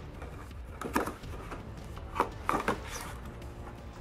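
A DVD box set being handled by hand: a few light knocks and scrapes of the case, one about a second in and a couple more between two and three seconds in, over faint background music.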